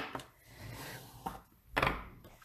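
Bone folder rubbed over the fold of a thick white cardstock card base to crease it, a soft scraping of tool on paper. Near the end comes a short, louder scrape.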